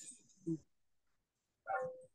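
A short laugh, then a brief pitched sound with a few steady tones near the end.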